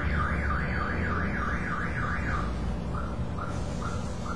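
Car alarm sounding: a siren tone wailing up and down about three times a second, switching about two and a half seconds in to short repeated chirps, over a steady low rumble.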